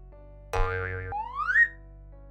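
Cartoon sound effects over soft background music: a short warbling effect about half a second in, then a rising, boing-like pitch glide, the kind of effect that marks an animated part popping into place.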